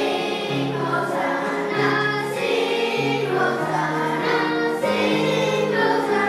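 A choir of children and adults singing a song together, the voices moving from one held note to the next.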